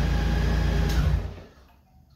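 Honda Gold Wing's flat-six engine idling with a low steady hum, which dies away about a second and a half in, just after a click.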